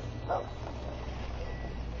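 UPS delivery truck's engine running as it moves across a gravel drive, a steady low rumble, with a faint high beep about a second and a half in.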